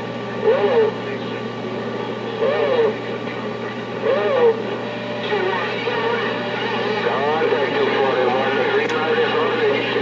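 CB radio speaker carrying unclear voices of other operators on the channel over a steady low hum, with a sharp click near the end.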